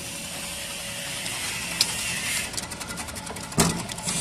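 Banana chips slicing machine running steadily, its motor humming and the rotating cutter hissing as it slices produce fed down the feed tubes. A sharp click about two seconds in and a louder knock near the end.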